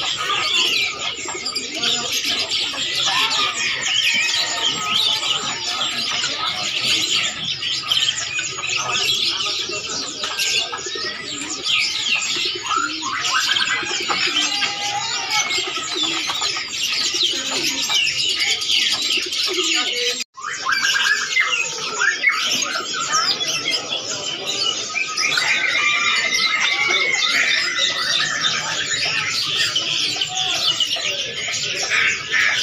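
Dense chorus of many caged birds chirping and twittering over one another. The sound drops out for a split second about twenty seconds in, then carries on.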